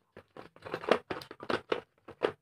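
Steel sockets clicking and knocking against each other and the plastic case as they are handled in their slots: a quick, irregular run of short clacks.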